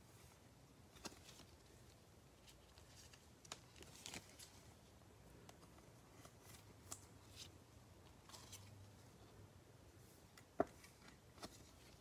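Faint rustles and light clicks of glossy trading cards and a clear plastic card sleeve being handled with gloved hands, with one sharper tap about ten and a half seconds in.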